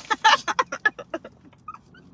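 Hearty laughter in a run of quick, breathy bursts that grow fainter and slower, trailing off about a second and a half in.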